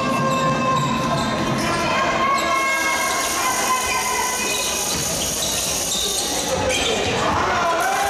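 Live basketball play in a gym: a ball being dribbled on a wooden court, with voices over a steady din that echoes in the hall.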